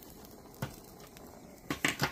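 Light metal-on-metal clinks from hand tools and loose engine parts: a single clink a little past half a second in, then a quick cluster of louder ones near the end.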